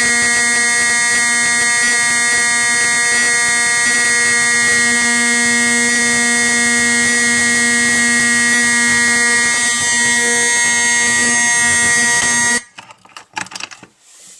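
Simplex 4051 24-volt DC fire alarm horn sounding, set off from a pull station: one loud, steady, buzzing blare that cuts off suddenly near the end, followed by a few clicks.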